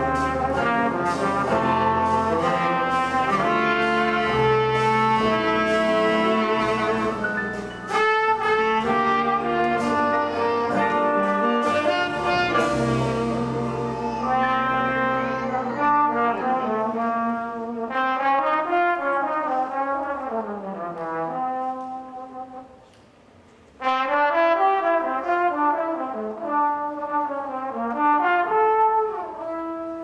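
Live jazz ballad on trombone and tenor saxophone, first over a rhythm section of bass and drums. About halfway through the rhythm section drops out and the two horns play on alone, with a brief pause before a final phrase that trails off near the end.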